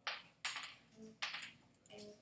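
A quiet 'mm-hmm' from a person, among about five short, faint scratchy noises.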